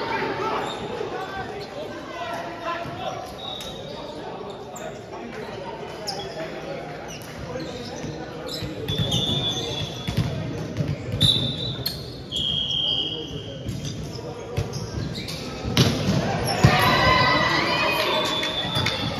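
Volleyball bouncing and being struck in a large, echoing sports hall, with sharp thuds coming more often past the middle and a few short high squeaks. Players call out near the end as a rally starts.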